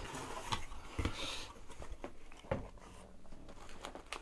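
Cardboard box being opened by hand: its flaps are lifted and the box is handled, with a few light knocks and a short scraping rustle about a second in.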